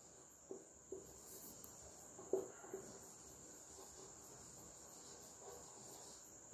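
Soft taps and scrapes of a marker writing on a whiteboard, the clearest about a second and two seconds in, over a cricket trilling steadily in the background.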